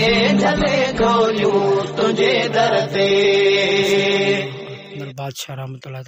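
Male voice singing Sindhi devotional naat in long, held, chant-like notes over a steady low drone. The singing fades out about five seconds in.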